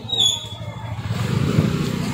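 A motorcycle engine passing close, its low rumble building to its loudest about a second and a half in. A brief high-pitched squeak comes just after the start.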